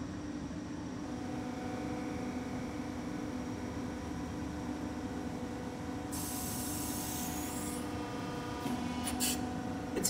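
Factory ambience: a steady machinery hum with several low tones. A high hiss joins about six seconds in and lasts about two seconds, and a few short sharp hisses come near the end.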